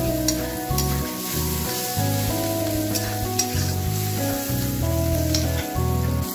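A flat metal spatula stirring and scraping pav bhaji masala that is sizzling in oil in a kadhai, with a few sharp scrapes against the pan. Background music with held notes plays under it.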